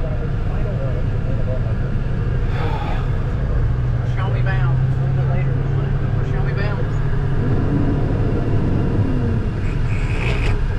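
Semi truck's diesel engine running steadily under way, a constant low drone heard from inside the cab.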